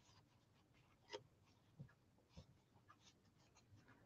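Near silence: room tone with a few faint, light taps and rustles of card stock being handled on a desk, about a second in and twice more shortly after.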